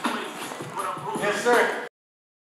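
A person talking, unscripted, with a few light knocks or shuffles around them; the sound cuts off suddenly just before the end.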